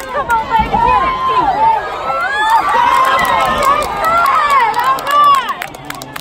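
Crowd of spectators at a football game shouting and cheering, many high-pitched voices at once, dying down near the end.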